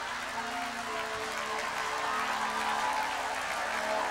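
Soft, sustained background music chords held steady, under the murmur and laughter of a church crowd.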